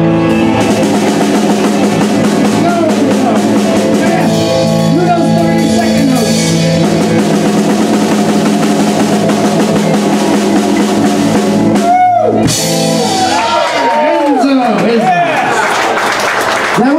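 Live rock band with drum kit and guitar playing until the song stops about twelve seconds in. Cheering and clapping follow.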